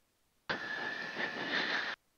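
A burst of radio static with a faint steady whistle in the cockpit headset audio. It switches on sharply about half a second in, holds evenly for about a second and a half, then cuts off abruptly, like a squelch breaking open on the COM radio or intercom.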